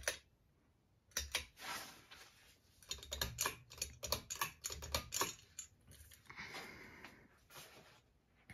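A ceiling fan's pull-chain switch being worked: a run of irregular light clicks and small metal chain rattles over several seconds, as the fan is switched on.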